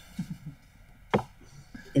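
A single sharp computer-mouse click about a second in, with a few faint low knocks just before it.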